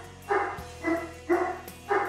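A dog barking at the front door: four barks in a steady run, about two a second.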